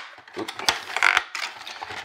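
Clear plastic blister packaging crackling and clicking as a vinyl figure is pried out of it by hand, with a few sharp snaps near the middle.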